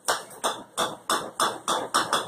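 Golf balls bouncing on a hard floor: a quick run of sharp, ringing knocks, about three a second and coming slightly faster toward the end.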